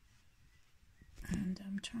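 Quiet at first, then a woman speaking softly, almost under her breath, from a little over a second in.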